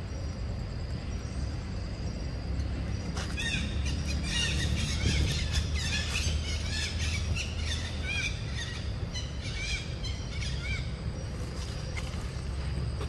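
Birds chirping, a quick run of many short calls starting about three seconds in and fading near the end, over a steady low rumble.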